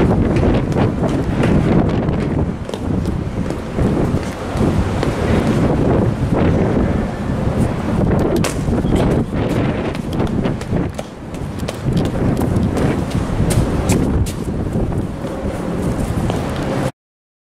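Wind buffeting the microphone in uneven gusts, with occasional footsteps on steel diamond-plate stair treads.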